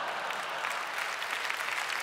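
Audience in a theatre hall applauding steadily, a dense crackle of many hands clapping.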